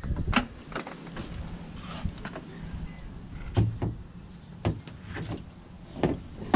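Scattered knocks and taps, about eight over a few seconds, from handling a clear plastic drain tube and garden hose at a plastic bucket during a heater-core flush, over a steady low hum.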